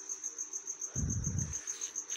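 Insect chirping steadily: a high-pitched note pulsing about five times a second. A short low thud or rumble comes about a second in.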